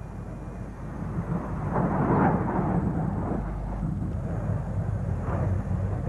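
Jet noise from an SR-71 Blackbird's two Pratt & Whitney J58 engines as it comes in low over the runway to land. It is a steady rush that grows louder about two seconds in.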